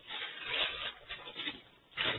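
Plastic packaging rustling and crinkling as it is handled, in irregular bursts that die away shortly before the end.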